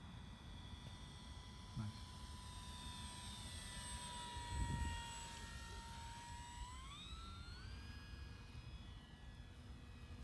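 An E-flite PT-17 RC biplane's electric motor and propeller whining steadily as it flies low, then rising in pitch about seven seconds in as the throttle is opened and the plane climbs away. A low thump comes about five seconds in.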